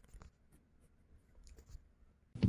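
Near silence, with faint scattered rustles and small clicks.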